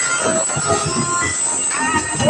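Live folk band music accompanying a giant-puppet dance, played loud through a sound system, with the low part dropping out for a moment while higher tones and voices carry on. The low part comes back at the end.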